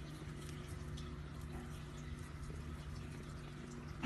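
Faint, scattered light ticks and scratches of a cockatiel's claws and beak gripping brick as it climbs, over a steady low hum.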